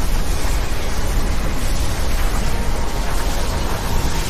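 Cartoon sound effect of magical lightning: a loud, steady wall of rumbling noise with a deep low end, like sustained thunder and crackling energy.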